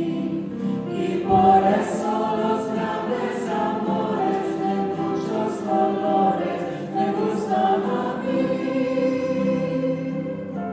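Mixed choir singing a Hispanic folk song in harmony with grand piano accompaniment, with a low thump about a second and a half in.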